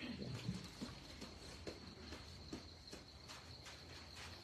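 Faint background sound in a pause: a steady thin high tone with a few soft ticks and rustles.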